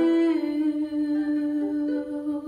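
A young woman humming the melody in long held notes, stepping down to a lower note about half a second in and rising briefly near the end.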